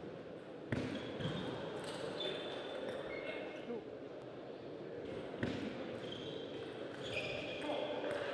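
Table tennis in a hall: a couple of sharp ball knocks, one about a second in and one past the middle, with short high squeaks of shoes on the court floor.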